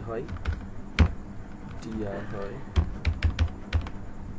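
Computer keyboard typing: scattered key clicks with one louder click about a second in, then a quick run of about six keystrokes near the end.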